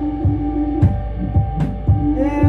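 Live band playing an instrumental passage of a rock song: a steady drum-kit beat with kick drum and two sharp snare or cymbal hits, under sustained keyboard chords.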